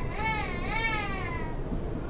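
A high-pitched wavering wail in several drawn-out rises and falls, stopping about one and a half seconds in. It sits over the steady low rumble of a suburban train carriage.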